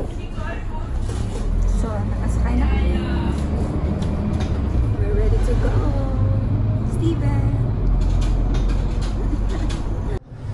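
Steady low rumble of a city bus's engine and running gear heard from inside the moving bus, with voices talking over it.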